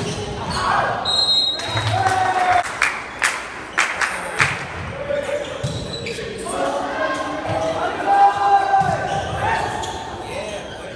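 Indoor volleyball rally in a large, echoing gym: several sharp slaps of the ball being hit come in quick succession in the middle, amid shouting voices of players and spectators.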